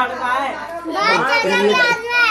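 High-pitched voices of several people talking and calling out over one another, excited and close to the microphone.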